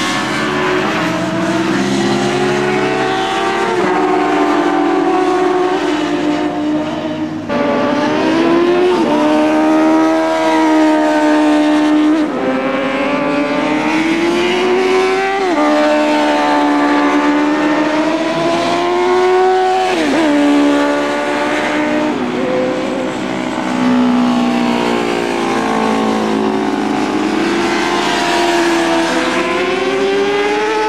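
Several racing sportbike engines running at high revs. Their pitch climbs through each gear, then drops sharply at each upshift, several times over, with more than one bike heard at once.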